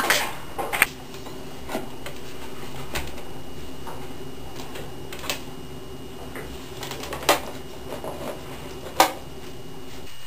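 Half a dozen short, sharp clicks spaced irregularly over a steady low hum.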